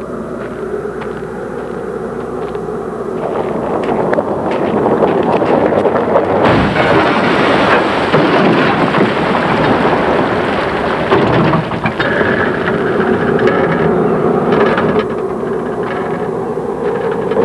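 An old sedan sliding down a dirt slope and crashing nose-first into the ground. The rumble builds from about three seconds in, a heavy impact comes about six and a half seconds in, and several seconds of crashing, rumbling noise follow as the car plows into the earth.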